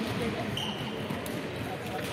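Indistinct voices of volleyball players in a large sports hall between rallies, with a brief high squeak of a shoe on the wooden court floor about half a second in.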